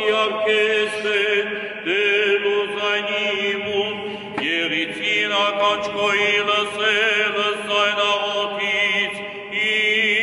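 Eastern Christian liturgical chant by a male voice: a slow, ornamented melody with wavering turns, sung over a steady low held note.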